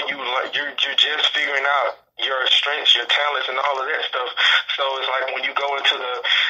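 A voice heard over a narrow-band telephone line, talking in continuous phrases with a short pause about two seconds in.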